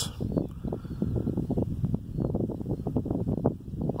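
Wind buffeting the microphone outdoors: a low, rumbling noise with irregular short gusts.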